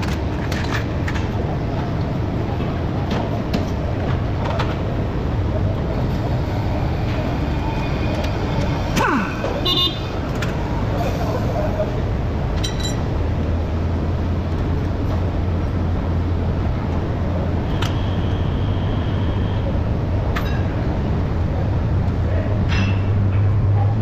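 Steady workshop noise with a low hum, and a few scattered metallic clinks of tools and parts being handled at a truck's front wheel hub.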